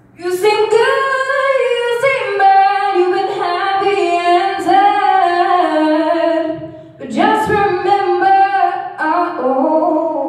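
A young woman singing a gospel song unaccompanied into a microphone, sliding and bending through long held notes in two phrases, with a short breath between them about seven seconds in.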